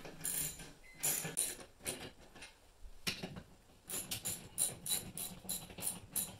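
Hand socket ratchet wrench clicking as the screws holding a TV wall-mount bracket to a wall stud are tightened, with a fast even run of about four clicks a second in the second half.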